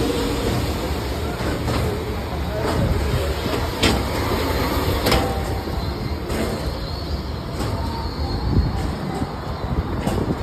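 Steady low rumble of a Ferris wheel in motion, heard from a gondola, with a few sharp clicks and faint background voices.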